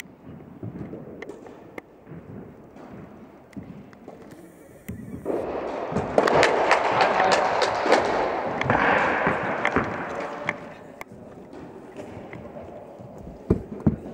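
A burst of hand clapping from a small crowd in an echoing indoor tennis hall, starting about five seconds in and lasting about five seconds, with scattered knocks of tennis balls before and after.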